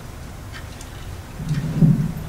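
Low rumble and dull thuds of a handheld microphone being handled as it is passed to an audience member, louder about a second and a half in.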